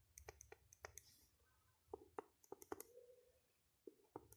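Faint clicks and scratches of a pen writing numbers and brackets on a spiral-notebook page.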